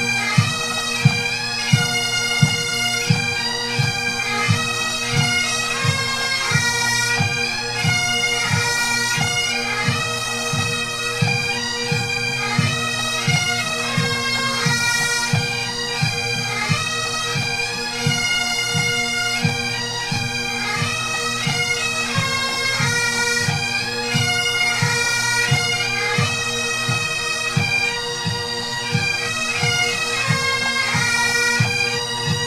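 Massed Highland bagpipes and pipe band drums playing a 3/4 march on the move: steady drones under the chanter melody, with the bass drum keeping an even beat.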